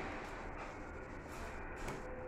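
Quiet room tone: a faint, steady hiss with a low hum and no distinct event.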